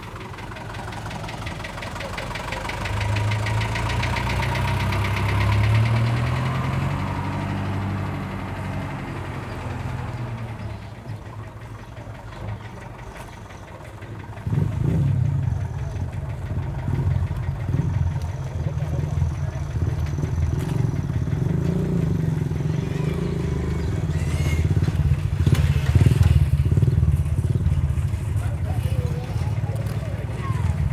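Toyota Bandeirante jeep's engine running close by and then driving off. About halfway through, a louder, steady low engine sound sets in suddenly and lasts to the end.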